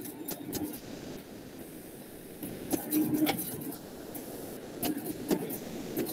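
Pen strokes on a tablet screen while handwriting: scattered short taps and scratches over a faint steady background hiss.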